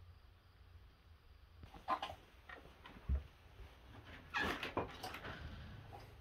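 Chickens at roost in the coop giving a few short squawks from about two seconds in, the loudest near the end, with a low knock about three seconds in.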